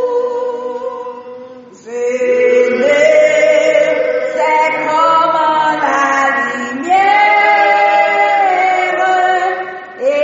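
A slow hymn sung in long held notes, with a break for breath about two seconds in and another phrase starting near seven seconds.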